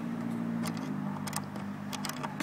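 A steady low hum that dips slightly in pitch about a second in, with a few faint clicks over it.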